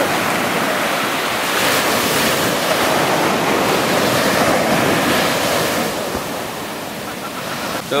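Sea surf breaking and washing up a sandy shore. The rush of the waves swells from about a second and a half in and eases off after about six seconds.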